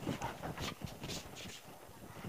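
Printed dress fabric rustling and sliding over the cutting table as it is smoothed flat and folded into four layers; a few faint, brief rustles.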